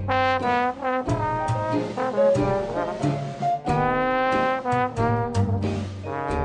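Traditional New Orleans-style jazz band playing in ensemble, with trombone and trumpet to the fore alongside clarinet, over piano, tenor guitar, bass and drums.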